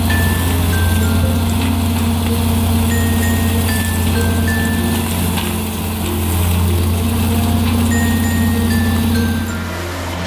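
Art's Way Top-Spread loader-mounted bale spreader running, shredding a round bale, a steady mechanical noise with a low hum that eases off near the end. Background music with a melody of short high notes plays over it.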